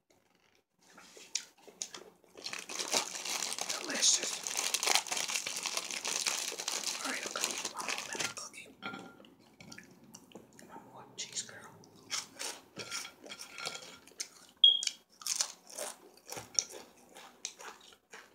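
Close-miked ASMR mouth and eating sounds: a few seconds of continuous crinkling, then a run of sharp, irregular wet clicks of lip smacking and chewing.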